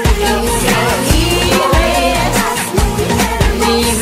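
Upbeat Spanish-language teen pop song with female voices singing over a steady drum beat of about two kicks a second.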